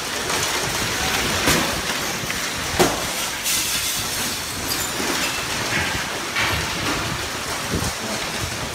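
Storm wind rushing in through broken windows into a large room, a steady rushing noise with bangs and clatters of debris, the sharpest about three seconds in.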